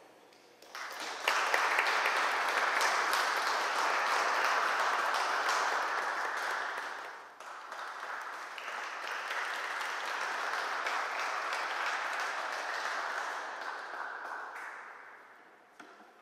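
Audience applauding. It starts about a second in, breaks off briefly about halfway, then carries on and fades out near the end.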